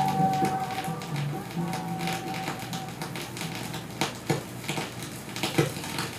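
A female-sung soul record on a 7-inch vinyl single fading out on a turntable. The music dies away over the first few seconds, leaving surface crackle and a few sharp pops from the groove.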